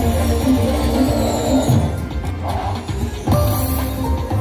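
Video slot machine (Prosperity Link, Cai Yun Heng Tong) playing its game music and reel-spin sounds as the reels spin and come to a stop.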